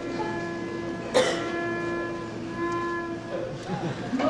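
A single musical note held steady for about three seconds, with higher tones coming in and out over it and one sharp click about a second in, over faint room murmur.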